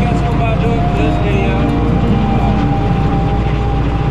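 Belarus 825 tractor's non-turbo diesel engine running steadily under load, heard from inside the cab, with a steady whine held over the engine note.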